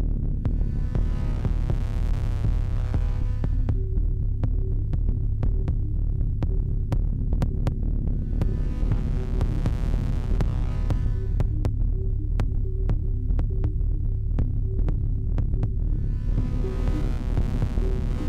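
Improvised electronic music from analog synthesizers: a deep, steady throbbing bass drone with a pulsing mid-pitched tone and scattered sharp ticks. A brighter, hissy wash swells and fades three times, about every seven seconds.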